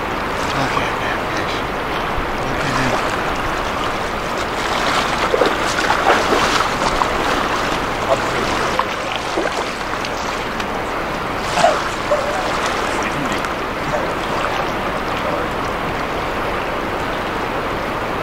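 River current rushing steadily around a wading angler, with a few brief splashes around six seconds in and a sharper one near twelve seconds as hands and a steelhead move in the water.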